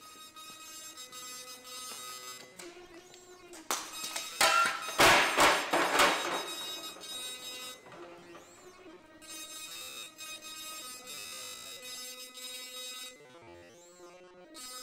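Background music with sustained held tones, growing louder and harsher for a couple of seconds about four seconds in.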